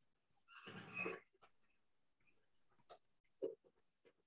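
Near silence, broken by one short breathy noise about a second in and two faint ticks near the end.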